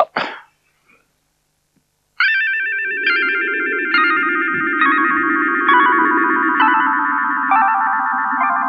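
Shimmering, wavering magic-spell music that starts about two seconds in: a run of high notes stepping downward roughly once a second over a low steady hum.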